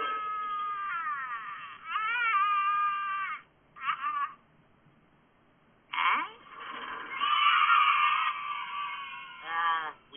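Cartoon characters screaming and wailing from a film soundtrack, played through a TV speaker and sounding thin. Long wavering cries fill the first few seconds, then there is a short spell of near quiet about halfway, then more loud yelling and a falling cry near the end.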